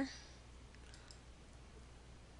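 A few faint computer mouse clicks about a second in, over a low steady hum of room tone.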